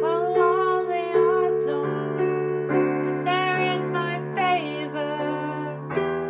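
Piano playing sustained chords, with a voice singing long, wavering notes over it.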